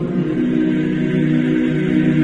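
Choral music: voices holding long, steady chords, shifting to a new chord just after the start.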